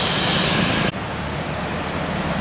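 Road traffic: vehicle and motorcycle engines passing with a loud rushing noise that cuts off abruptly about a second in, leaving a lower, steady engine rumble of slow traffic.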